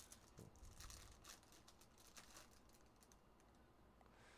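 Faint crinkling and tearing of a foil card-pack wrapper being pulled open by hand: a scatter of small crackles over the first couple of seconds, then quieter.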